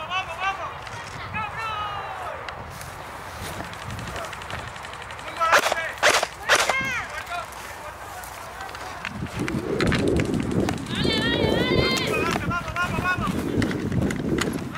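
Men shouting across the field in short calls, the loudest a few sharp shouts about five to seven seconds in and more calls near the end. Faint scattered clicks come in between, and a low rumbling runs under the last few seconds.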